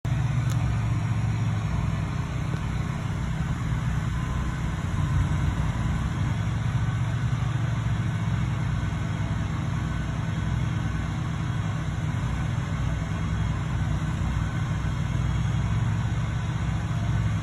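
A vehicle engine running steadily with a low, even hum.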